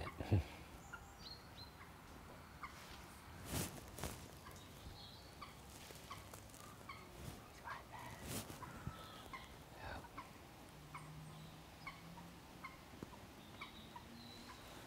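Quiet lakeside ambience with faint, scattered bird chirps and a few short knocks at about four and eight seconds in.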